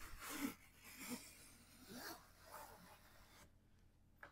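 Vixpyzz sliding pizza peel being worked across a floured countertop and under a pizza: faint, soft scrapes in a few short strokes.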